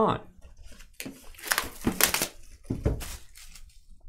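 Cardboard trading-card hobby box being handled and its outer sleeve slid off, giving a few seconds of scraping and rustling with soft knocks.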